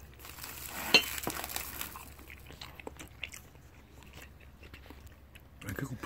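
A person eating udon noodles, chewing and biting, with a sharp click about a second in and a few softer clicks, then quieter.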